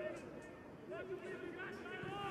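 Faint football stadium ambience: distant voices calling and shouting across the pitch over a low background hum of the ground.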